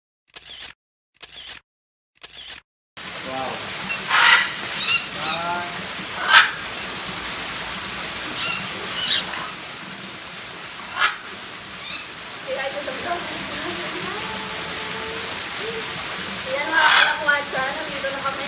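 Parrots giving short, harsh squawks, one at a time every second or few, over a steady hiss of background noise. The first three seconds are broken by silent gaps.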